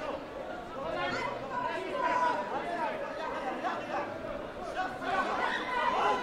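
Many overlapping voices chattering and calling out in a large sports hall: the crowd at a taekwondo bout.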